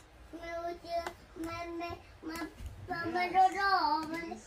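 A young girl singing softly to herself: a run of short held notes, then a longer wavering phrase that bends up and down near the end.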